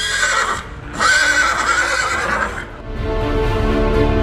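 Karabakh horse neighing twice: a short call at the start, then a longer, wavering whinny of about a second and a half. Background music comes back after the calls.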